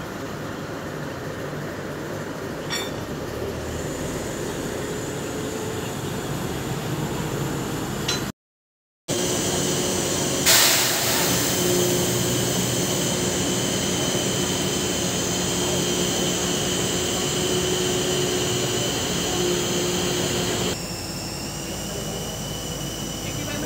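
Heavy railway crane's engine running steadily during a load-test lift, with a low drone and a steady high whine. The sound drops out briefly about eight seconds in and comes back louder. A single sharp metallic knock follows about ten seconds in.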